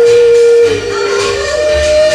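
Live pop song with a female voice holding long notes over a bass beat: one note steps down to a lower one, then rises about halfway through to a higher note held with a slight waver.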